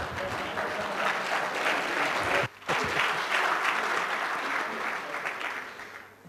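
Audience applauding, with a brief break near the middle before it picks up again and dies away near the end.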